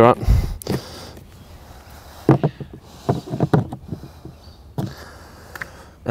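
Plastic irrigation valve box and lid being pressed and settled into place: a low thud near the start, then scattered light knocks and creaks of plastic.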